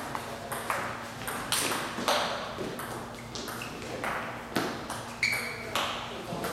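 Table tennis ball being hit back and forth in a rally, a sharp click off the paddles and table about every half second, some bounces leaving a brief ringing ping.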